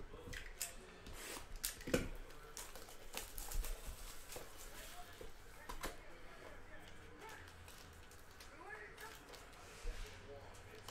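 Cardboard trading-card hobby box being handled and opened, with its foil packs pulled out and set down: scattered taps, scrapes and cardboard clicks, the sharpest about 2 seconds in and again near 6 seconds.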